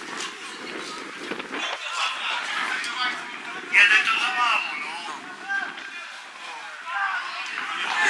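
Distant shouts and calls from footballers on an open-air pitch over steady outdoor background noise, with the loudest shout about four seconds in.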